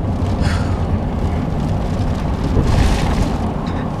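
Steady low rumble of a car on the road, heard from inside the cabin.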